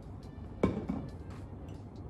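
A metal milk frother jug set down on a countertop: one sharp knock with a short ring, then a lighter knock, over quiet background music.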